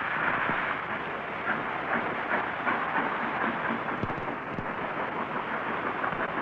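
Steam express locomotive City of Chester, an LMS Coronation-class Pacific, working as it pulls a train out of the station: a steady rush of steam and exhaust noise. The old film soundtrack has no treble.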